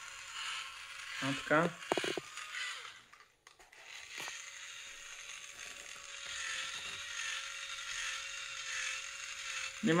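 Toy drill's small motor and plastic gears whirring steadily, with a short stop about three seconds in before it runs again until near the end.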